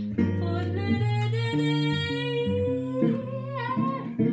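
A woman singing a long held note, then rising into a new phrase near the end, over jazz guitar chords played on a hollow-body guitar.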